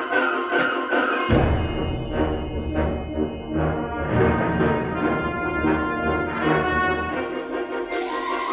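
Concert band of woodwinds, brass and percussion playing; about a second in the low brass and percussion come in under the higher parts, and they drop out again near the end.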